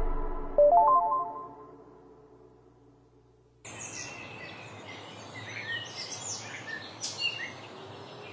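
A music cue ending in a short rising run of bell-like notes that dies away to silence. About three and a half seconds in, outdoor ambience cuts in with birds chirping over a steady background hiss.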